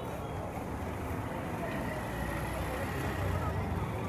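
Street traffic noise: a steady low rumble from three-wheeler auto-rickshaws and other motor traffic moving along the street, with people's voices mixed in.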